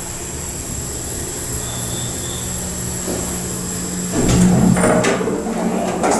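1972 Otis traction elevator car running with a steady hum, then its doors sliding open about four seconds in, a louder, rougher rumble with a couple of clicks.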